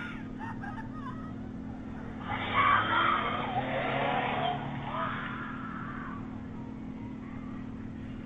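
A woman screaming "Somebody help me!" from a car driving past, heard through a Ring doorbell camera's microphone. The screams last about three seconds, starting about two seconds in, over a steady electrical hum.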